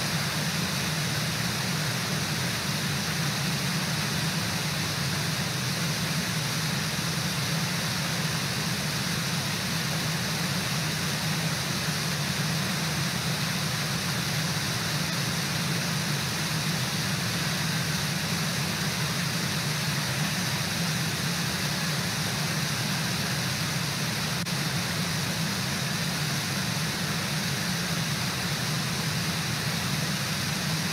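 Brooks Falls, a low river waterfall, pouring steadily into the rapids below: an even, unbroken rush of water.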